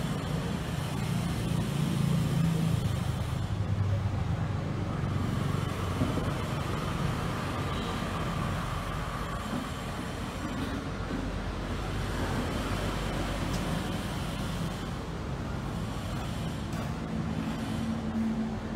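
Steady low rumble of road traffic passing nearby.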